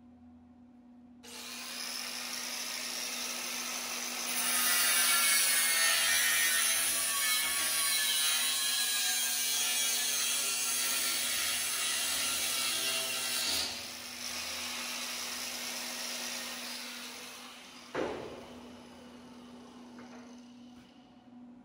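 Handheld angle grinder grinding the steel of a vehicle frame. It starts about a second in, grinds hard and loud from about four seconds in for roughly nine seconds, then grinds more lightly and fades. A single sharp knock comes near the end.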